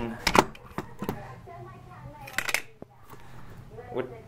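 Handling noise: a few sharp clicks and knocks as the camera is brought down onto a table, with a small cluster of them about two and a half seconds in.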